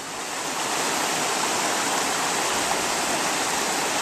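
Shallow creek water rushing steadily over rocks, growing a little louder in the first second and then holding even.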